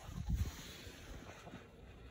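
Faint wind noise on the microphone, with a few low rumbles in the first half second.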